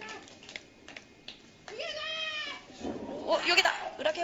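Two drawn-out, high-pitched vocal cries with sliding pitch, about two seconds and three and a half seconds in, the second louder, after a few faint knocks.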